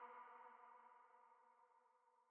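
The faint tail of a trap beat's sustained synth notes fading out into near silence.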